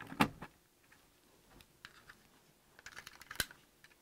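Plastic clicks and scrapes from a ceiling smoke detector being twisted off its mounting base and its battery pulled out. The clicks are scattered, and a sharp click about three and a half seconds in is the loudest.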